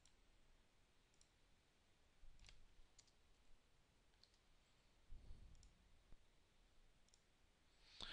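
Near silence with a few faint, scattered clicks, typical of a computer mouse and keyboard in use.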